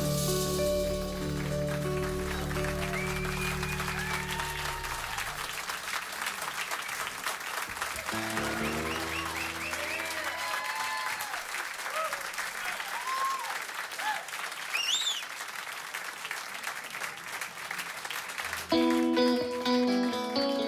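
Club audience applauding and cheering, with whoops and whistles, as the band's final chord rings out and fades over the first few seconds. About a second before the end, an electric guitar, a Fender Stratocaster, comes in loudly with the next song.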